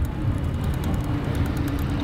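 Steady noise of road traffic going by on a street.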